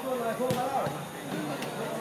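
Players' voices calling out across a small-sided football pitch, with sharp knocks of a football being kicked, one about half a second in and another past the middle.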